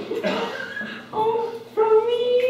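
A performer's voice making animal-like yelps and whimpers in place of words, ending in a long, slightly rising whine near the end.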